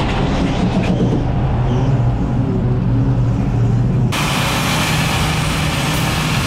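Truck diesel engine working steadily under load as an IVECO X-Way tractor pulls a 30-tonne tipper trailer off from a stop on mud, with the trailer's SAF Intra-Trak hydraulic axle drive engaged. The sound turns suddenly brighter and hissier about four seconds in.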